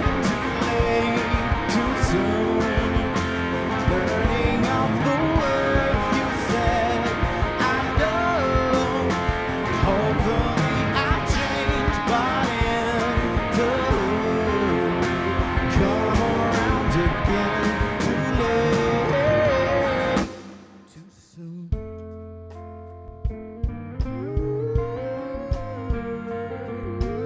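Live rock band playing loud with electric guitar, bass guitar, drum kit and a bowed cello. About twenty seconds in the whole band stops at once, and after a short lull a softer passage of held notes and guitar begins.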